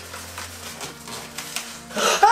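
Cardboard gift box and its packaging being handled and opened: a few soft rustles and light scrapes.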